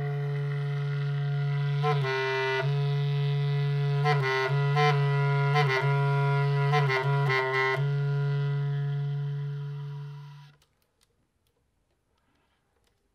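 Solo bass clarinet in free improvisation: one long low note with strong overtones, broken in the middle by quick short interruptions and flickering upper tones, then fading out about ten and a half seconds in.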